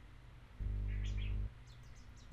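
A bird chirping in short high calls, once about a second in and again near the end. Under the first call a steady low hum comes in for about a second and then cuts off.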